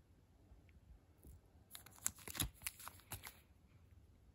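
Clear plastic bags of model-kit parts crinkling as they are handled, a quick run of crackles starting just under two seconds in and lasting about a second and a half.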